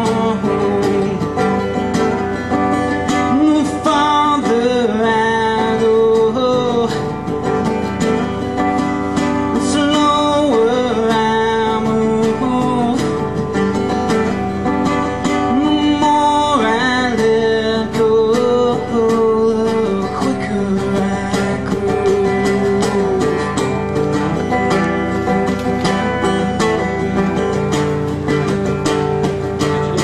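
Acoustic guitars playing an instrumental passage of a live folk-rock song: steady strummed chords under a melodic lead line that rises and falls in pitch.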